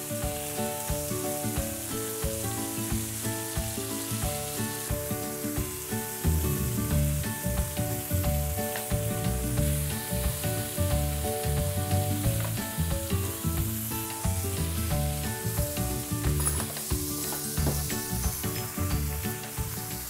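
Cherry tomatoes sizzling on an oiled griddle, under background music whose melody steps from note to note. A heavier bass beat comes in about six seconds in.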